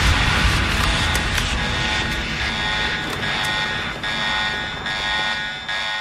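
A steady, buzzy, engine-like drone with a thin high whine on top. It eases slowly downward in loudness.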